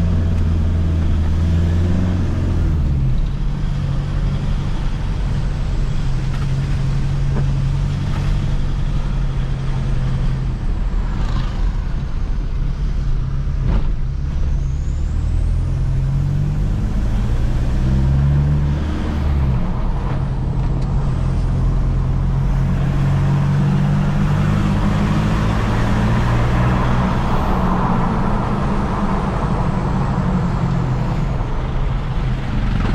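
Toyota Hilux Vigo's engine heard from inside the cabin while driving. It climbs in pitch as it pulls through a gear and drops at each gear change, about three seconds in and again near twenty seconds, over steady road noise.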